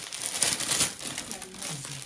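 Glossy gift-wrapping paper rustling and crinkling as a present is pulled open by hand, loudest about half a second in.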